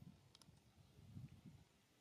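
Near silence with a couple of faint sharp clicks about half a second in and soft low rustling after: a macaque gnawing on a dry twig.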